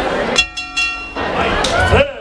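A horn sounds once, a steady buzzing tone lasting under a second, signalling the start of the round. Crowd voices and shouting are heard around it.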